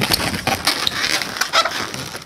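Inflated latex 260 modelling balloons rubbing and crackling against each other as one twist is worked in between two others: a run of irregular short scrapes and squeaks.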